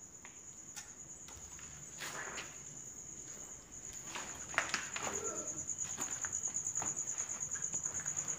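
Crickets chirping, a steady high trill that turns into a fast, even pulsing about halfway through, with faint footsteps and small knocks over it.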